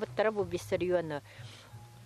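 A woman speaking, who stops a little over a second in, over a faint steady low hum.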